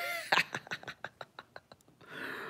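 A woman laughing: a short pitched "ooh" at the start, then a run of quick, breathy laughing pulses that fade away.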